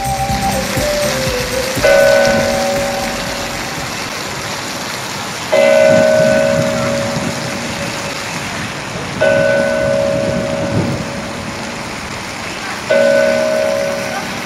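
A large bell tolling slowly, four strokes evenly about 3.7 seconds apart, each ringing on and dying away, over a steady rushing background noise.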